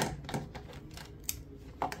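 Scattered small clicks and taps of hands handling Rode Wireless Go II transmitters and USB-C cables, the sharpest click right at the start and a few lighter ones after.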